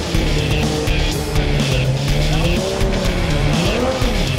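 Volkswagen Golf 3 16V race car's two-litre engine revving, its pitch rising and falling a couple of times, with rock music underneath.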